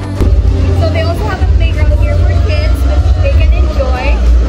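Noisy open-air amusement-park ambience: people's voices and music over a heavy, continuous low rumble.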